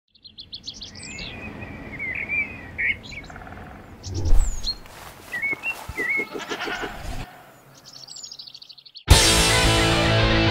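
Bird chirps and trilled calls over a soft background, with a low thump about four seconds in and a short run of rapid pulses around six seconds. About nine seconds in, loud electric-guitar rock music starts suddenly and becomes the loudest sound.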